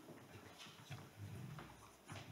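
Faint room noise in a hall, with soft irregular knocks and rustling, as of people moving about and settling in chairs.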